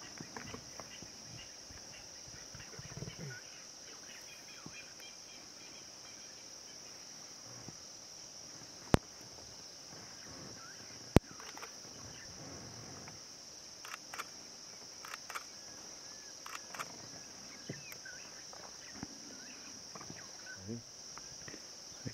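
Steady, high-pitched chorus of insects, typical of crickets calling in the bush at dusk. Two sharp clicks cut through it, about nine and eleven seconds in.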